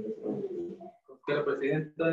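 A person's voice speaking over a video-call connection, with a short pause about a second in.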